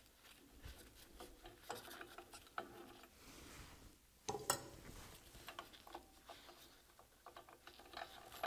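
Faint small metallic clicks and scrapes of a hex wrench turning a bolt out of a steel shaft coupling, with a sharper cluster of clicks about four and a half seconds in.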